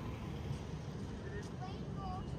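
City street ambience: a steady low rumble of traffic, with distant voices of passers-by coming in a little over halfway through.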